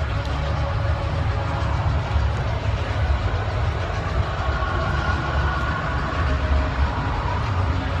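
Exhibition-hall ambience: a steady low rumble with a faint murmur of distant voices.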